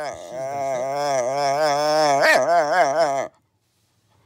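A Shiba Inu shut in a crate for the first time gives one long, wavering, howl-like whine of protest at being confined, lasting about three seconds before it stops.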